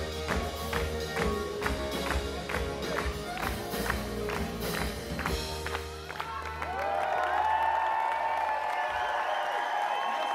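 Band music with a quick, steady beat that stops about six seconds in, followed by a crowd cheering and applauding.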